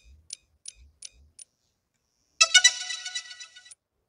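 Logo sting: five light ticks, about three a second, then a bright, shimmering chime of several high tones lasting just over a second.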